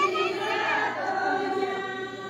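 A group of voices singing a folk dance song together.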